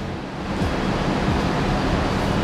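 Steady background hiss with a low, even electrical hum underneath; there is no distinct event.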